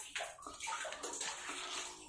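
Water dripping and splashing faintly in a wet stone cave passage, a run of small irregular drips.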